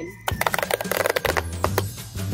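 Cardboard toy box being torn open along its seam with a pull-to-open tab: a quick run of crackling clicks lasting about a second and a half, over background music.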